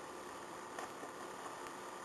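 Faint steady hiss of room tone and microphone noise, with no distinct event.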